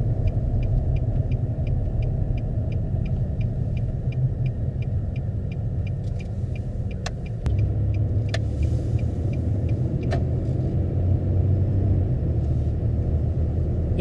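Car driving slowly on a residential street, heard from inside the cabin: a steady engine and road rumble that grows louder about halfway through as the car speeds up. For the first several seconds a turn signal ticks about three times a second, then stops.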